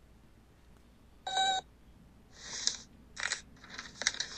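A cartoon robot's short electronic beep about a second in, followed by two short hissy sniffles near the end as a sick boy brings a tissue to his nose.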